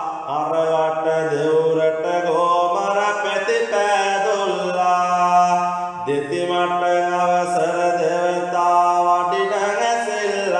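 A man chanting Sinhala devotional kolmura verses in long, drawn-out melodic lines, each held note sliding into the next, with short breaks between lines about every three seconds.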